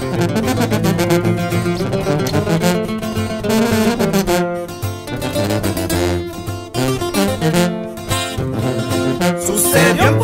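Instrumental break in a Mexican corrido: plucked acoustic guitars play a melody over a steady bass line, with no voice.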